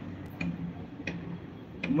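Regular ticking, about three ticks every two seconds, over a low steady hum.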